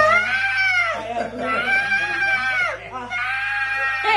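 A man's voice bleating like a goat: three long, drawn-out cries, each rising and then falling in pitch.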